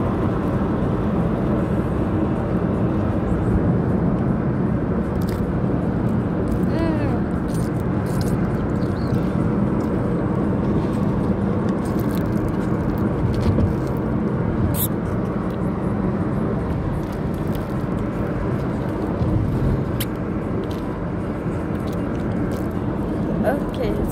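Steady road and engine noise inside a moving car's cabin, with indistinct voices underneath.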